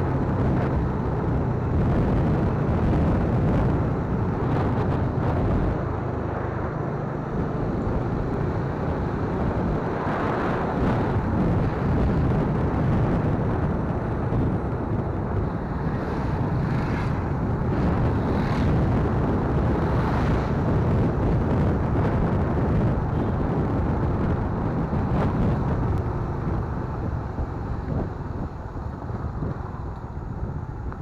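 Wind rushing over the microphone of a camera on a moving motorcycle, with the bike's engine running underneath. The sound eases a little near the end as the bike slows.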